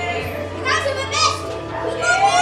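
Excited young voices, not forming clear words, over background music and a steady low hum.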